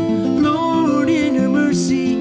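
Fingerpicked acoustic guitar playing a song, with a man's voice singing along.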